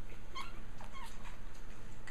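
Japanese Chin puppies giving a few faint, short high-pitched squeaks.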